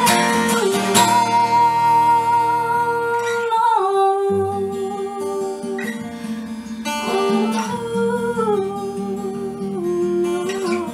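Acoustic guitar played under a woman's wordless singing: long held notes that step down in pitch a few times.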